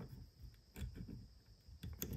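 Faint, sparse small clicks of metal parts being handled: a barbecue skewer and the spring-loaded latch of an engine hoist clevis hook being worked by hand in a bench vise.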